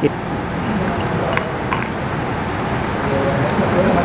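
Two light metallic clinks about a second and a half in, from the parts of a Karcher K2 pressure washer's pump (housing and swash plate) being handled and fitted back together, over a steady background hum.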